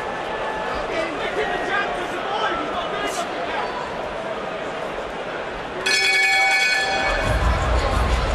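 Arena crowd noise with shouting voices during a boxing round. About six seconds in, the ring bell rings to end the round, and a low rumble follows.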